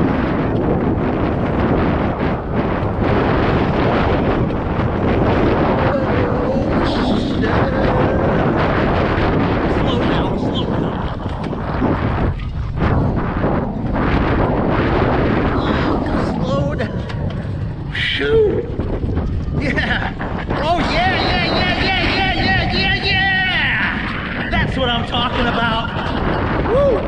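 Loud, steady rush of wind on the microphone over the rumble of an alpine coaster sled running fast along its metal rail track.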